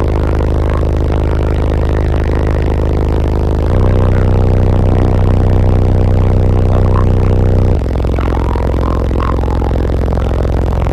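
Two PSI Platform 5 subwoofers in a ported box tuned to 26 Hz, playing sustained deep bass notes loudly inside the vehicle. The note changes about 4 seconds in and again near 8 seconds.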